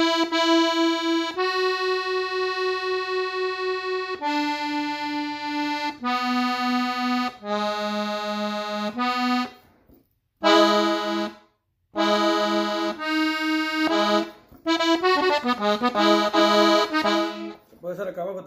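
Diatonic button accordion tuned in E playing a norteño melody, mostly two notes at a time, in long held notes at first. The playing breaks off briefly twice near the middle, then moves into a quicker run of notes near the end.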